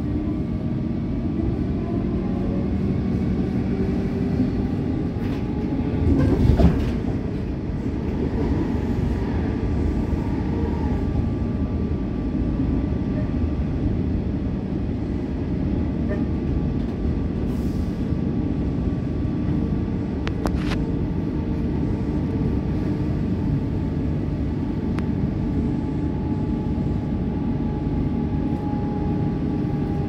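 Inside an EDI Comeng electric suburban train running along the line: the steady rumble of wheels on rail under the whine of the traction motors, whose pitch drifts a little with speed. A louder surge of rumble about six seconds in, and a few sharp clicks later.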